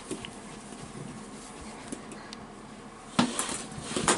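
Faint taps and scuffs of a toddler's toy hockey stick and plastic balls on a carpeted floor, with one louder clack about three seconds in.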